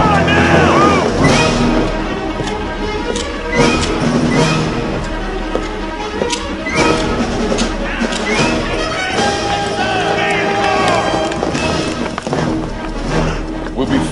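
Action-film soundtrack: music runs throughout, mixed with sound effects that include repeated sharp hits and, at times, shouted voices.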